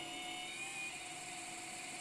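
Celestron NexStar 8SE computerised mount's drive motors slewing the telescope tube on a hand-controller command: a faint, steady electric whir.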